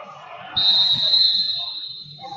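Wrestling referee's whistle, one long steady blast beginning about half a second in, blown to stop the action.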